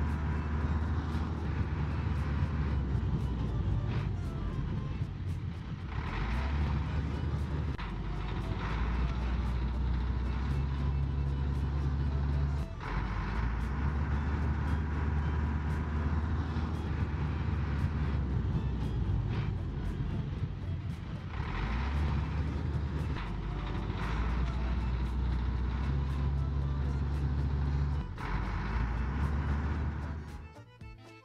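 Heavy truck engine running, its low rumble stepping up and down as if through gear changes, with the same stretch repeating about every fifteen seconds.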